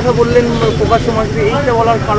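A man's voice talking, over a steady low background rumble.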